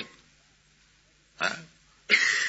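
A pause in a man's recorded lecture with only faint background hiss. About a second and a half in, it is broken by one brief throaty vocal sound from the speaker.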